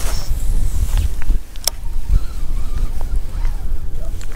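Wind buffeting the microphone as a low, uneven rumble, with one sharp click about one and a half seconds in.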